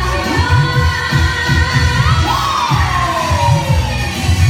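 Live amplified music with a singer: a steady pulsing bass beat under a sustained melody, with one long note falling in pitch about halfway through, and crowd noise underneath.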